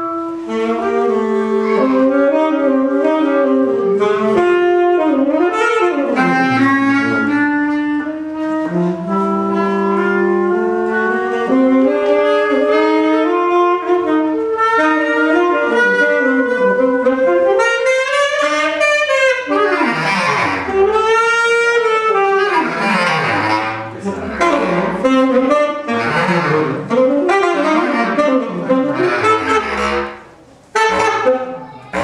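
Tenor saxophone and bass clarinet playing jazz as an unaccompanied duo, two lines weaving against each other with the bass clarinet low underneath. From a little past halfway the playing turns to fast, busy runs.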